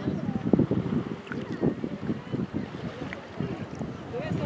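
Wind buffeting the microphone in uneven gusts at the seashore, with small waves lapping and faint, distant voices of bathers.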